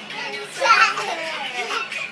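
A young child's high-pitched excited voice squealing and calling out with bending pitch, loudest about half a second in, amid children at play.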